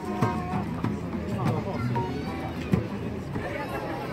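Street musicians playing acoustic guitars and a djembe hand drum, with a few sharp drum strokes standing out, under the chatter of people walking past.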